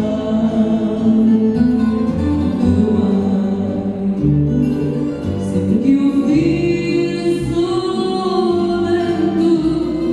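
Live duet: a woman and a man singing held, sustained vocal lines to acoustic guitar accompaniment.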